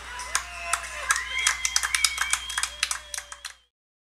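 Fireworks crackling in sharp scattered pops, with several thin whistling tones drawn out over a second or two; it all cuts off shortly before the end.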